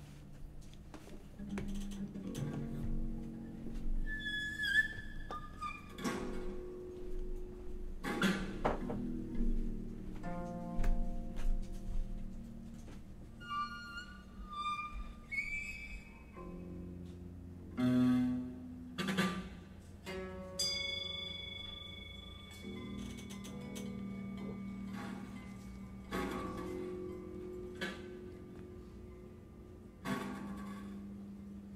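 Two harps laid flat on tables, played in an experimental improvisation with a gloved hand rubbing the strings. They give sustained, bowed-sounding tones and high whistling harmonics, broken by several sharp plucked or struck notes.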